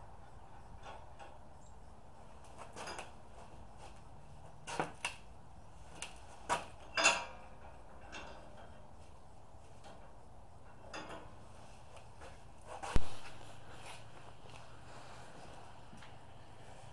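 Scattered metal clinks and knocks of steel trailer parts and hand tools being handled, a few light ones spread through, with one louder sharp knock near the end that rings briefly.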